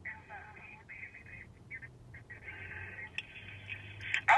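Faint voice of the person on the other end of a phone call, heard through the handset's earpiece: thin, telephone-quality speech in short stretches with pauses.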